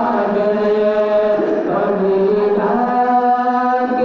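Two men singing a naat unaccompanied into handheld microphones. They hold long, drawn-out notes that glide to a new pitch about every second and a half.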